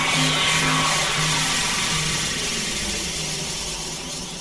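Noisy electronic music near the end of a track: a low pulsing drone fades out about a second and a half in, leaving a dense hissing wash that slowly fades.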